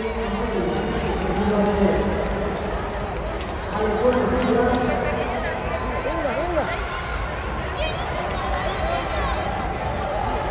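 Crowd of spectators in an indoor arena, a steady babble of overlapping voices with scattered calls and shouts, echoing in the hall.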